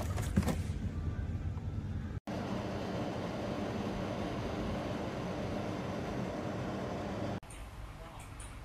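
Cardboard box handled, with rustles and a few clicks. After an abrupt break, the steady whooshing hum of a SMARTHOME air purifier's fan running, which cuts off sharply after about five seconds.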